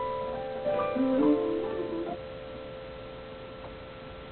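Digital keyboard on a piano sound playing a short run of notes, then a final note left to ring and fade away as the piece ends.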